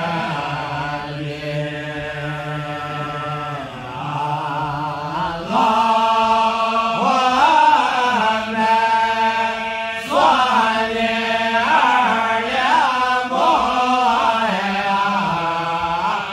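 Men's voices in melodic Islamic devotional chanting in Arabic, held notes ornamented with wavering turns of pitch. The chanting grows louder from about five seconds in.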